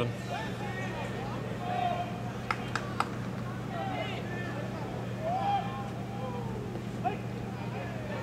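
Softball field ambience: scattered distant shouts and chatter from players and spectators over a steady low hum, with three sharp clicks in quick succession about two and a half seconds in.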